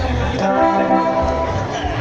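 Live band music through PA speakers: a keyboard-led grupero band playing held chords over a heavy, pulsing bass beat.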